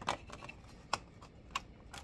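Cardboard advent calendar door being opened by hand: four light clicks and taps, the loudest a little under a second in.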